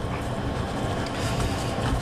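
Steady low hum with an even hiss, like a fan or small motor running, with no separate knocks or clicks.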